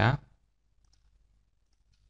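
A spoken word ends, then a few faint, short computer mouse clicks as an image is picked in a file dialog.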